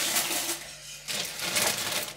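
Plastic grocery bags and food packaging rustling and crinkling as groceries are handled, with a few light knocks and a brief lull just before halfway.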